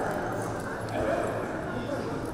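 Indistinct spectators' voices murmuring steadily in an indoor arena, with no clear words.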